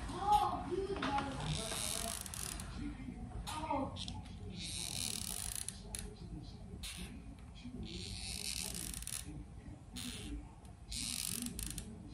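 Quiet room with a few faint murmured words and four soft hisses, each lasting about a second, spaced a few seconds apart, while hot glue is squeezed onto a paper craft.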